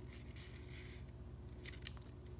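A square of paper being folded in half by hand: faint rustling, with a couple of short crinkles near the end, over a steady low electrical hum.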